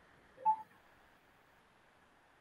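A single short rising two-note electronic blip, like a video-call app's notification sound, about half a second in. It sits over a faint steady line hiss.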